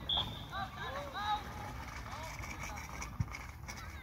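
Football players shouting and calling across the pitch, heard from the touchline, over a steady low rumble of wind on the microphone. A brief high peep comes right at the start, and a single thud about three seconds in.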